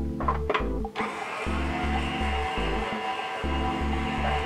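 KitchenAid stand mixer motor starting about a second in and then running steadily, beating butter and sugar into a pale, creamy mix, under background music with a bass beat.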